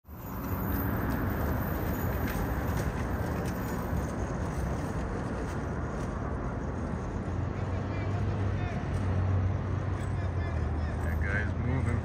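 Steady street traffic noise, with a low engine hum that comes up about seven seconds in.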